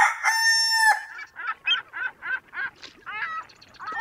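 Rooster crowing: one long, held call that ends about a second in, followed by a quick run of short clucking calls, about four a second.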